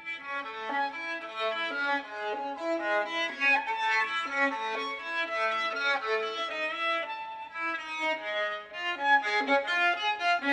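Solo violin playing a continuous stream of bowed notes that change several times a second. The playing starts just before this stretch and runs on, easing slightly in loudness for a moment about three-quarters of the way through.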